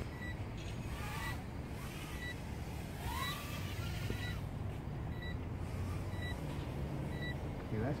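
Brushless motors of a small FPV racing quad whining faintly, their pitch rising and falling with the throttle as it is flown. Under it there is a steady low hum, and short faint beeps come about once a second.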